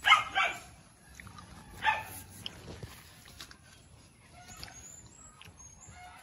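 A dog barking: three short barks in the first two seconds, then quieter.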